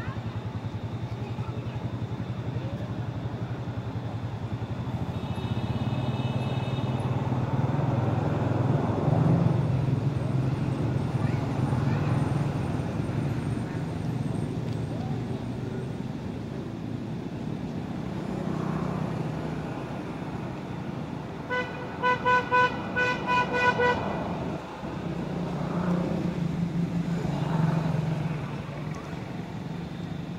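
A motor vehicle's engine running steadily, swelling a few seconds in and easing off again. A horn beeps in a quick run of short toots a little over twenty seconds in.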